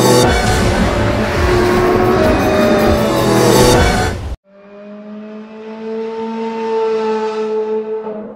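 A show-intro car sound effect mixed with music: a loud, dense rush that cuts off suddenly about four seconds in. It is followed by a quieter held tone of several pitches that slowly swells and fades.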